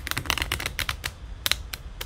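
Tarot cards being handled: a quick, irregular run of about a dozen light clicks over two seconds.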